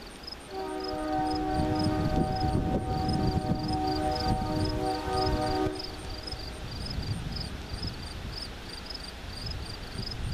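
A diesel freight locomotive's multi-note air horn sounds one long blast of about five seconds as the train approaches a level crossing, over a low engine rumble. Crickets chirp steadily in the background.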